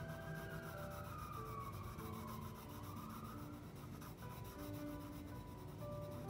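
Blue colored pencil rubbing on paper in quick hatching strokes while the colour is tested on scratch paper, over soft background music.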